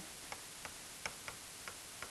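Light clicks of a stylus tapping and stroking a writing surface while handwriting, about five short ticks over two seconds, over a faint steady hiss.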